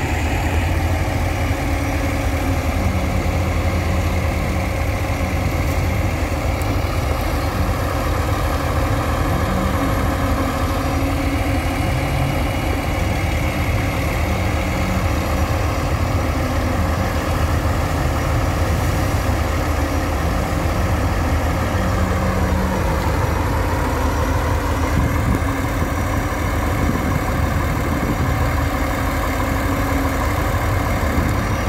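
Engine of a river cargo barge running steadily, with a low, even pulse; its note shifts about two-thirds of the way through.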